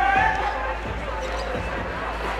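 Crowd hubbub on a busy pedestrian street: many voices and footsteps. In the first half-second one voice holds a long pitched note, which then stops.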